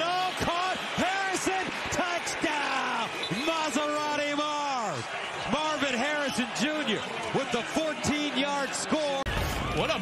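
Excited, drawn-out voices rising and falling in pitch, over the steady noise of a stadium crowd. A short low rumble comes in about nine seconds in.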